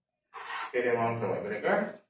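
A man's voice speaking briefly; no other sound stands out.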